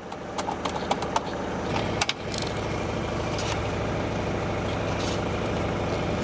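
Mercedes-Benz 240 GD's four-cylinder diesel engine idling steadily. A few sharp clicks and knocks in the first couple of seconds come from the car phone's handset being unclipped from its dashboard cradle.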